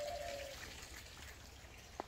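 Quiet outdoor ambience: a faint steady hiss, with a short faint tone in the first half second.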